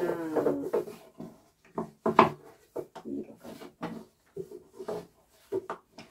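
A long thin wooden rolling pin (oklava) working thin baklava dough on a wooden pastry board: a string of short, irregular rubbing strokes and knocks, the loudest about two seconds in. A brief pitched, voice-like sound comes at the very start.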